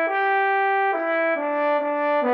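Solo trombone playing the song's melody line: one note held for about a second, then shorter notes stepping down in pitch.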